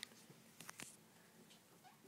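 Near silence: room tone with a few faint, sharp clicks, one at the start and a short cluster a little past half a second in.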